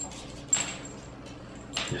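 A person sniffing at the open neck of a plastic soda bottle: one sharp inhaling sniff about half a second in that trails off.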